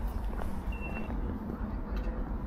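Outdoor ambience with a steady low rumble, and a single short, high electronic beep lasting about half a second, a little under a second in.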